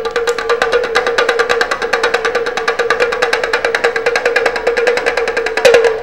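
A small ukulele-like stringed instrument strummed very fast, about ten strokes a second, on one steady held note, loud and even, with a brief bend in pitch near the end.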